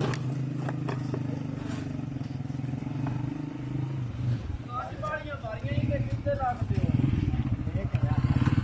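Motorcycle engine drawing closer and getting louder over the last few seconds as it passes close by, after a steady engine hum in the first half. A few sharp clicks early on, with a voice about five seconds in.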